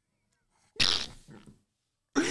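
A man's single sudden burst of laughter, a breathy exhale through the mouth and nose, about a second in, followed by two faint short after-breaths.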